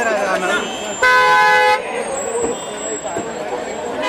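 A car horn sounds once, a short steady blast of under a second about a second in, over people talking and calling out close by.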